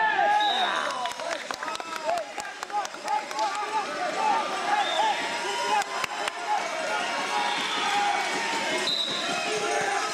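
Busy gymnasium ambience during a wrestling bout: many indistinct voices and shouts, with scattered knocks and squeaks from wrestling shoes on the mat, and a few brief high-pitched tones.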